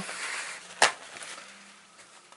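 Cloth rustling softly, then a single sharp plastic click a little under a second in as a plastic wire clip is set down on the rim of a plastic tub.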